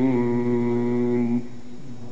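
A male Quran reciter's voice in melodic tajweed recitation, holding one long steady note that stops about one and a half seconds in, after which only a quieter background remains.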